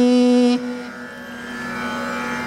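A male Carnatic vocalist holds a long sung note that ends about half a second in. A softer steady drone carries on underneath at about the same pitch.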